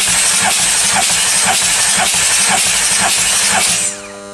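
The starter cranks an Audi 3.0 TDI V6 diesel (CGQB) steadily for a compression test, a loud hissing whir with a faint regular pulse, and stops just before the end. The fourth cylinder reads 25 kg/cm², against 26 on the other cylinders.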